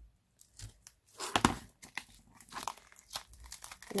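Sellotape being slit with a craft knife and peeled off a cured silicone mould block, crinkling and tearing in short irregular bursts, the loudest about a second and a half in.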